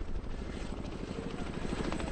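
CH-47 Chinook tandem-rotor helicopter in flight, its rotors beating in a rapid, steady rhythm over the engine noise.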